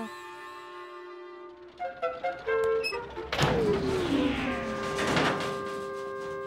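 Cartoon underscore music. A held chord gives way to a few quick notes, then a loud thunk with a descending slide in pitch about halfway through, a second crash about two seconds later, and a sustained chord to finish.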